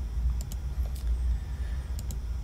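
A steady low hum with a few faint, short clicks from a computer mouse, about half a second in and again near one second.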